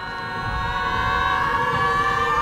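A long, held tone of several pitches at once, slowly growing louder, with one pitch starting to waver near the end.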